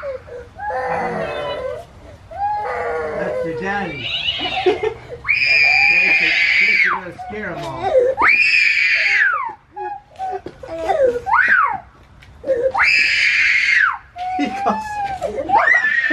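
Several high-pitched screams, each held for about a second or more and falling away at the end, with talking in between.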